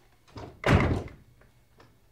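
A shop's front door swinging shut with a loud thud about two-thirds of a second in, just after a lighter knock, followed by a couple of faint clicks.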